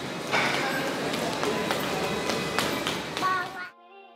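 Footsteps tapping irregularly on a hard polished floor in a large indoor hall, with voices in the background. About three and a half seconds in, the sound cuts off abruptly to quiet, steady intro music.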